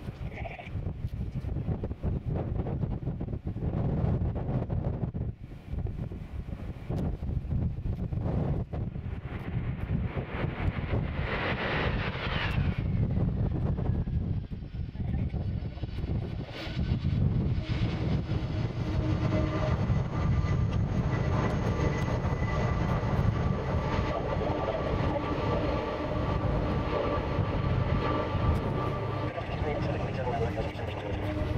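Wind buffeting the microphone over a low rumble, then from a little past halfway the steady whine and rumble of a Boeing 747-400 freighter's four jet engines grow louder as the airliner lands and rolls out along the runway.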